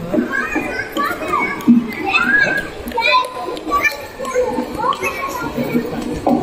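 Children's voices talking, high-pitched and breaking up like speech, throughout.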